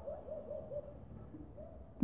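A faint, quick run of low hooting notes, like a bird calling in the distance, repeating several times a second, then a few more near the end.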